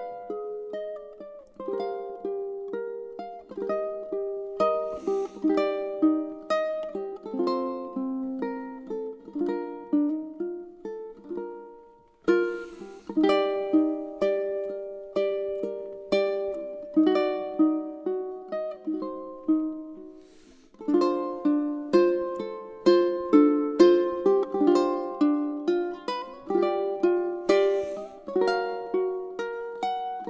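Solo fingerstyle ukulele, a Seilen SLTS-1950R, playing a slow melody over chords, each plucked note ringing and fading. The playing thins to almost nothing twice for a moment, about twelve seconds in and again around twenty seconds in, before picking up again.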